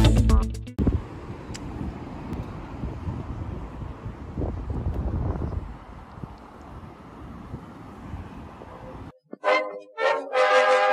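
A guitar music sting cuts off within the first second. Several seconds of low, uneven outdoor noise follow while the camera is carried through an open parking lot. Brass music starts near the end.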